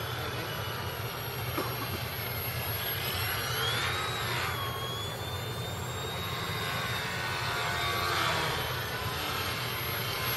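Indoor RC model airplane's motor and propeller whining overhead. The pitch glides up to a peak about four seconds in, drops back, then holds steady before fading near the end, over a steady low hum.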